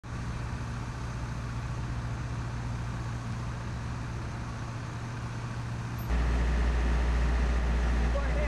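Heavy truck's diesel engine running steadily as it slowly tows a load, a low even hum. About six seconds in, the sound switches abruptly to a louder, deeper steady rumble.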